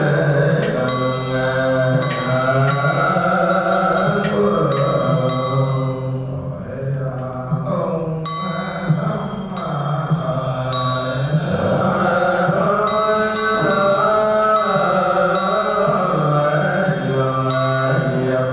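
Buddhist chant sung to a slow melody, voices holding long wavering notes over music, with a brief lull about six seconds in.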